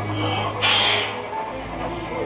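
Pre-show soundtrack music over a steady low hum, with one brief harsh sound effect a little over half a second in.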